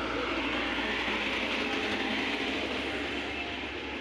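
An Indian Railways passenger train, hauled by an electric locomotive, passing close by: a steady noise of the coaches' wheels running on the rails.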